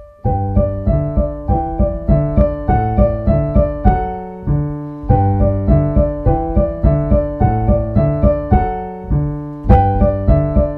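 Piano playing a duet accompaniment part, the right hand in steady eighth notes over repeated bass notes in the left hand, a brisk even stream of notes.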